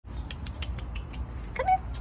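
A beagle sniffing rapidly at the ground with its nose down, about six quick sniffs a second. A short squeaky sound that rises in pitch comes near the end and is the loudest moment.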